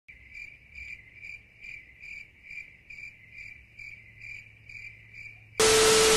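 Cricket chirping in a steady rhythm, a little over two short chirps a second, each on one high pitch. Near the end it cuts to a sudden loud burst of hiss with a steady low tone under it.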